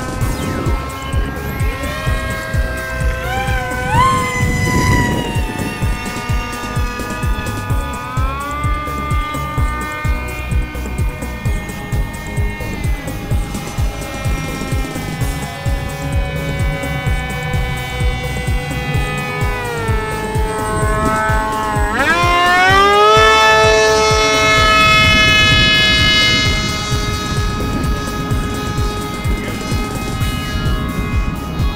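Electric motor and pusher propeller of a foam RC jet in flight: a high whine with many overtones whose pitch rises and falls with the throttle, and a sharp upward sweep about two-thirds of the way in into a louder full-throttle stretch. There is a constant low rumble of wind on the microphone.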